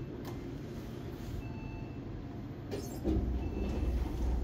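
Elevator car interior: the floor button clicks as it is pressed about a quarter second in. A short high electronic beep repeats about every two seconds. From about three seconds in, a low rumble gets louder.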